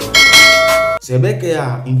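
Loud bell-like chime sound effect for a notification bell, a cluster of ringing tones held for about a second and then cut off abruptly. A man's voice follows.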